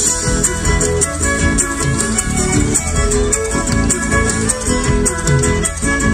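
Live Argentine folk band playing an instrumental passage: a violin leads over plucked or strummed guitar, with a rattle-type percussion keeping a steady beat.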